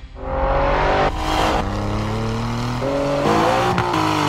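Alfa Romeo Giulia Quadrifoglio's 510-horsepower twin-turbo V6 accelerating hard. The engine note climbs in pitch, breaking off and picking up again a few times.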